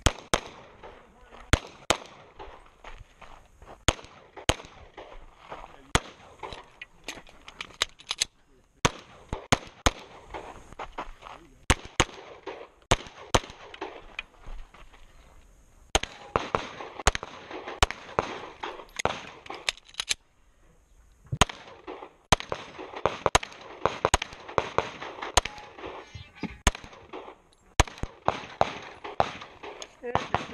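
Semi-automatic pistol fired at close range, dozens of sharp shots in quick pairs and strings with short pauses between them and a longer break about two-thirds of the way through.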